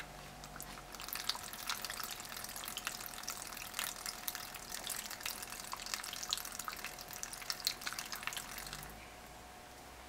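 Vibrating water spattering as droplets are thrown up and fall back, a dense run of small irregular splashes that starts about a second in and stops near the end, over a faint steady tone.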